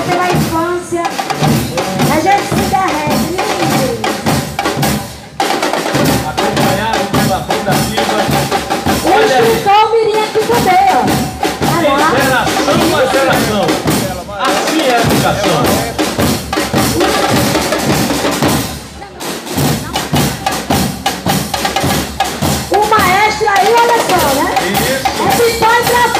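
School marching band drum line playing a marching beat on bass drums, snare drums and crash cymbals, with short breaks in the beat about every four to five seconds.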